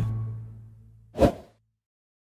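A low held note at the end of a commercial demo reel's music bed fades away, and about a second in a short whoosh sound effect sweeps past, ending the audio.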